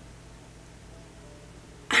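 Quiet room tone with a faint, steady low hum; a woman starts speaking again right at the end.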